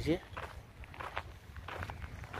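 Footsteps on gravel, several soft, unevenly spaced steps.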